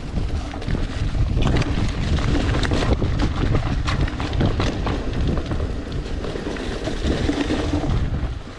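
Wind rushing over the camera microphone with the rumble of a mountain bike's tyres on loose dry dirt on a fast descent, and frequent sharp knocks and rattles from the bike over bumps. It gets louder about half a second in.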